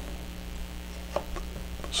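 Low, steady electrical mains hum in a quiet room, with two faint clicks a little over a second in.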